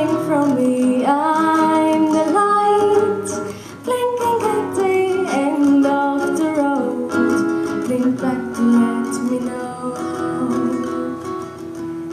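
A woman singing to her own nylon-string classical guitar accompaniment, the sung melody running through with the guitar beneath it.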